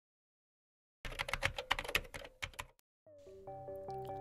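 Rapid typing on a computer keyboard, a quick irregular run of clicks lasting almost two seconds, after a second of silence. About three seconds in, soft music with held notes begins.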